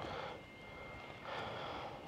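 Faint pause between phrases: a soft breath-like hiss a little over a second in, over a thin steady high whine in the first half.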